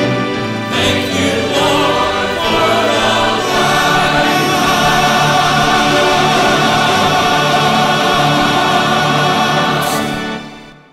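Mixed choir singing the closing bars of a gospel song, settling into a long held chord.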